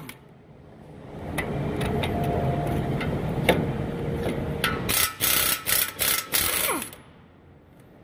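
Half-inch drive mini air impact wrench (Flexzilla Pro) working on the 21 mm front brake caliper bracket bolts to break them loose. It runs steadily from about a second in, then fires a run of short, loud bursts until about seven seconds in.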